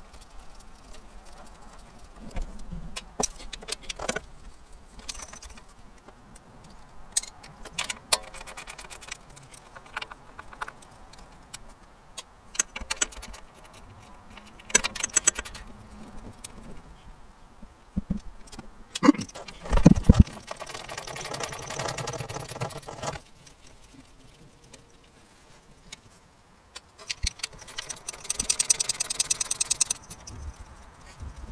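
Hand work on a motorcycle engine's valve cover: scattered clinks, clicks and rattles of metal tools, bolts and plastic wiring connectors being handled. There are a couple of dull knocks about twenty seconds in and a run of rapid clicking near the end.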